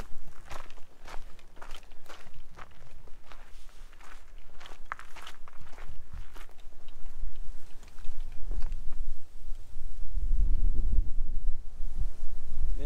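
A hiker's footsteps on a rocky trail, about two steps a second, as sharp scuffs and crunches. In the second half the steps fade under a low rumble that grows louder toward the end.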